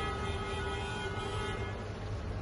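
A vehicle horn held in one long, steady note that stops shortly before the end, over a low steady rumble of traffic.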